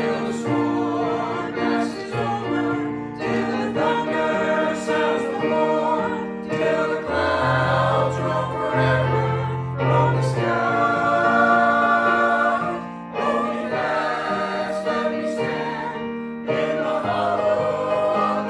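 A small mixed church choir singing a hymn in parts, over an accompaniment of long held chords and bass notes that change every second or two.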